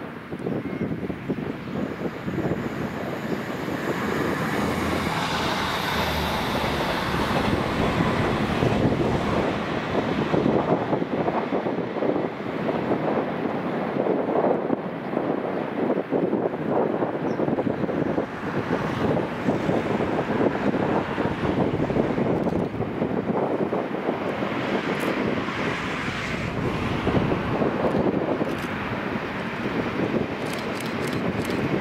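Class 59 diesel locomotive, with its EMD two-stroke V16 engine, hauling a train of coaches: its engine and the wheels on the rails make a steady noise throughout, with wind on the microphone.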